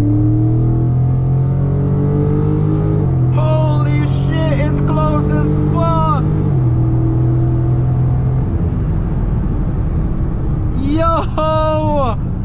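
Dodge Charger Scat Pack's 6.4-litre HEMI V8 heard from inside the cabin, pulling hard under full acceleration, with loud engine and road noise. Voices shout over it midway and again near the end.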